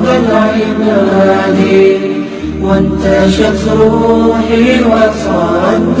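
Male voice chanting an Arabic devotional song (nasheed), with long held, wavering notes over a steady low hum.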